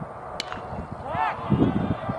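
Baseball bat striking a pitched ball: one sharp crack, followed about a second later by a short shout, with wind rumbling on the microphone throughout.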